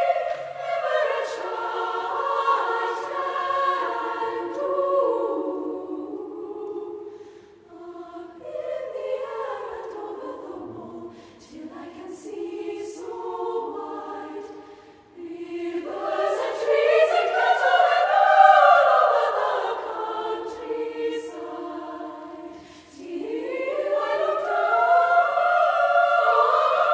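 Girls' choir singing in several high parts, phrases swelling and fading. The loudest passages come at the start, about two-thirds of the way in, and again near the end, with softer dips between.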